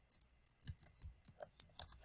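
Typing on a computer keyboard: a quick, irregular run of keystroke clicks, about a dozen in two seconds.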